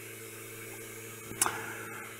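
Small 6 V DC motor spinning a propeller, running with a steady hum. A brief short noise comes about one and a half seconds in.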